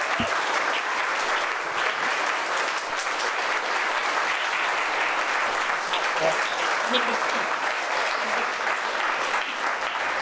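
An audience applauding steadily, with a few voices mixed in.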